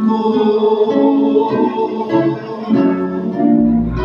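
A live folk group's acoustic guitars playing a melodic passage with held sung notes over them; the deep bass drops out and comes back in just before the end.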